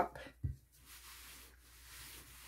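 Canned air hissing faintly and steadily for about two seconds as it blows a drop of alcohol ink across a resin-coated board, with a soft low bump just before.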